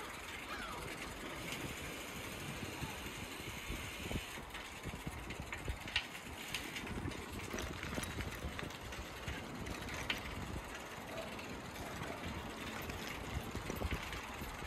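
Bicycle rolling over cobblestones: a continuous rough rumble and rattle from the tyres and frame over the stones, with a few sharper knocks as it hits bumps.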